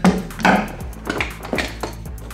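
A few light clinks and knocks of metal hand tools being pulled out of a canvas tool bag, over background music.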